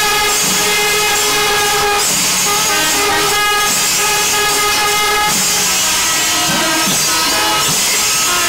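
Kerala temple wind ensemble of kombu horns and kuzhal playing long held notes over continuous ilathalam hand-cymbal clashing. The held notes break off and start again about two seconds in and once more a little after five seconds.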